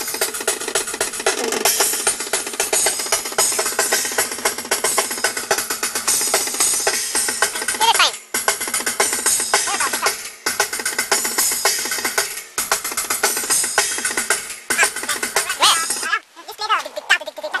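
Drum kit played through a fast, busy take during a recording session, dense with cymbal and snare hits, with short breaks in the playing about every two seconds in the second half.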